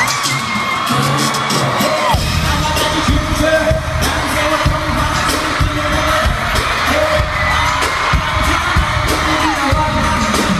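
Loud live hip-hop/EDM pop music through arena speakers, with vocals and audience cheering. The heavy bass beat drops in about two seconds in and continues.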